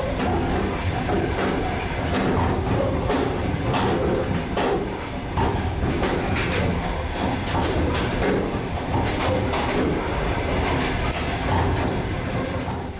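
Moving passenger train heard from inside the carriage: a steady rumble with frequent irregular clicks and knocks.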